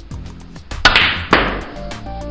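Two sharp clicks of snooker balls about half a second apart: the cue tip striking the cue ball, then the cue ball hitting the brown. Background music with a steady beat plays underneath.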